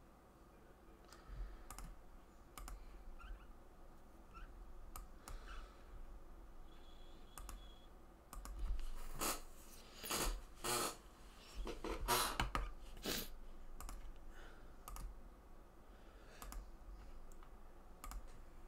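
Computer keyboard typing and mouse clicks: scattered light clicks at first, then a denser, louder run of keystrokes around the middle.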